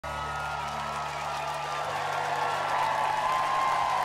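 Short television ident jingle, a held low chord that drops away about two seconds in, over a live crowd applauding and cheering.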